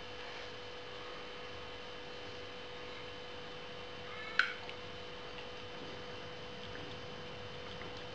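A steady hum holding one pitch, with a short, high-pitched sip or slurp about four seconds in as beer is drunk from a plastic hydrometer trial jar.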